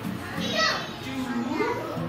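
Young children's voices: indistinct chatter and calling out in a classroom, with pitch rising and falling.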